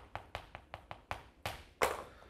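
Chalk on a chalkboard while characters are written: a run of quick, sharp taps, roughly four or five a second, the loudest near the end.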